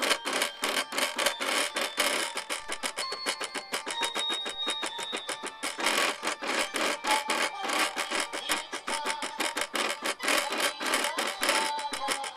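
Cricut cutting machine drawing with a pen in its carriage: its motors buzz in rapid, uneven pulses, with short steady whines that jump from one pitch to another as the carriage and rollers change moves.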